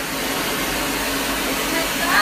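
Laser hair-removal equipment running: a steady rushing air noise with a faint low hum.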